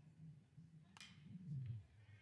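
A faint single sharp crack about a second in: a metal college baseball bat hitting a pitched ball, putting it in play on the ground. Faint low murmur of the ballpark around it.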